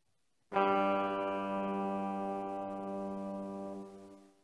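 Bulbul tarang (Indian banjo) strings sounded once about half a second in, one note ringing out and slowly dying away over about three and a half seconds.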